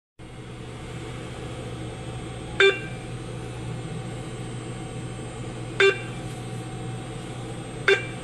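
ATM key beeps: three short electronic beeps about three seconds apart as the amount for a cash withdrawal is selected and confirmed, over a steady low hum.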